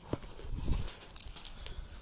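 Movement noise: scattered soft knocks and rustling as someone moves with the phone held against clothing. A low rumble of handling noise comes about half a second in.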